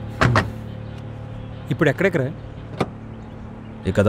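The steady low hum of a jeep's engine running, heard from inside the cab, with a single sharp click a little before three seconds in.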